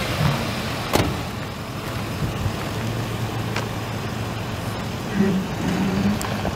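Ford 5.4-litre V8 gas engine of a 2007 F150 pickup idling steadily, with a sharp click about a second in.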